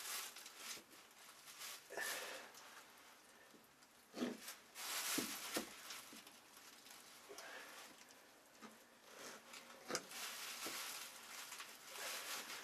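Faint, irregular rustling and scraping with a few soft knocks: hands handling carpet and a glue container while carpet adhesive is put down on a boat's cabin floor.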